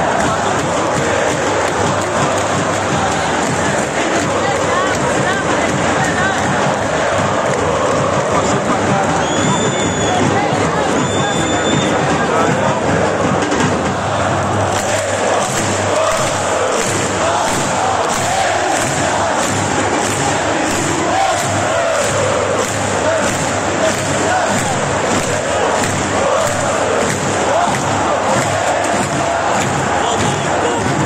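Large football crowd singing a supporters' chant together in the stands. From about halfway through, rhythmic clapping at roughly one and a half claps a second joins the song. Two short high whistles sound around nine and eleven seconds in.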